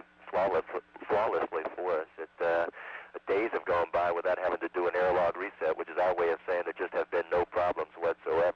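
A man speaking into a microphone over a space-to-ground radio link, the voice thin and cut off in the highs, with a steady low hum underneath.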